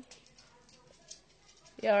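Near silence: quiet room tone with a faint click at the start, then a person's voice exclaims loudly near the end.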